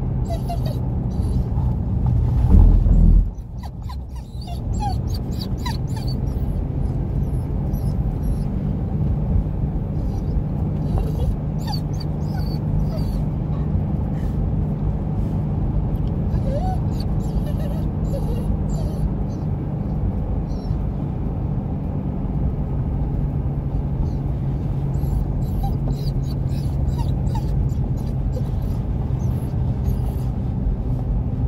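Steady low rumble and drone of a car cabin on the move, with a louder surge about two to three seconds in that cuts off suddenly. A dog whimpers in short, high little whines now and then over the rumble.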